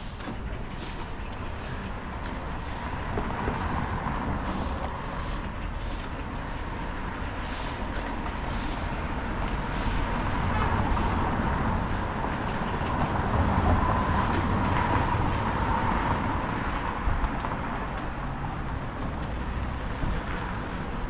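City road traffic: vehicles passing along the street, the rumble swelling loudest about ten to fifteen seconds in. Footsteps on the paved sidewalk tick at a steady walking pace, about two a second.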